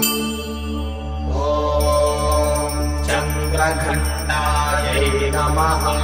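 A woman singing a Sanskrit devotional hymn to the goddess Durga in a slow, chant-like melody with gliding notes, over a steady low drone. The voice comes in strongly about a second in.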